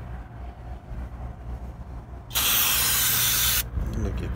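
Aerosol brake cleaner sprayed through its extension straw onto a drum-brake backing plate: one loud hissing burst of just over a second, starting about halfway through, over a steady low hum.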